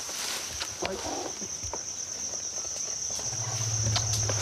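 A steady, high insect chirring, like crickets, runs throughout, with scattered short rustles and clicks. A low, steady hum comes in near the end.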